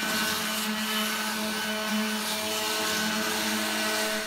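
Oscillating multi-tool with a triangular sanding pad and 60-grit paper, sanding old varnish off a solid walnut chair frame: a steady buzzing hum with the rasp of the paper on the wood, unchanged in pitch throughout.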